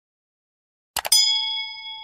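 A quick mouse-click sound effect about a second in, followed at once by a bright notification-bell ding that rings on and slowly fades.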